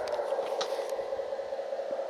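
Steady electric whine from the 1/14-scale hydraulic RC Caterpillar scraper's motor, dipping slightly in pitch just after it starts and then holding one tone, with a few faint ticks.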